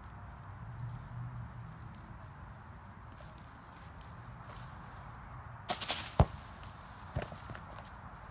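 Quiet outdoor background, then a quick cluster of sharp knocks about six seconds in and one more knock about a second later.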